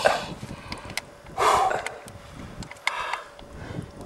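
Rustling and handling noises close to the microphone, most likely wet outdoor clothing being handled: three short bursts of rustle with a few sharp clicks between them.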